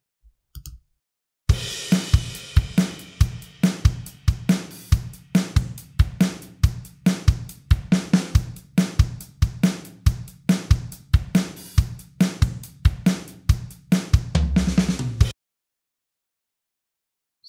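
GarageBand 'SoCal' drum kit playing a programmed eight-bar pop beat on its own: kick, snare and hi-hat in a steady pattern, opening with a cymbal crash. It starts about one and a half seconds in and stops a little before the end.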